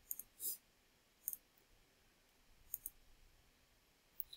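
Faint computer mouse clicks: a few short clicks and click pairs spread over the few seconds, with near silence between them.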